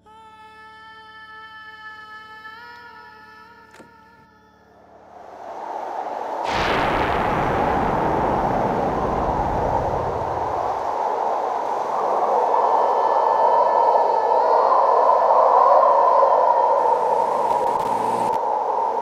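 Suspense film score: a sustained synthesizer chord that steps up in pitch, then a rising swell into a deep boom about six and a half seconds in, followed by a loud, steady rushing drone.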